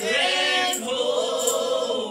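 A man singing a long, wavering line of a gospel hymn into a microphone, accompanied by his acoustic guitar.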